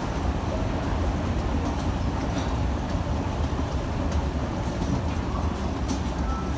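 Steady low rumble of a running escalator and the station machinery around it.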